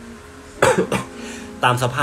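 A man who is unwell gives a short, sudden cough about half a second in.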